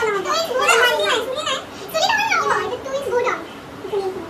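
Several girls laughing and chattering together; the laughter dies down after about three seconds.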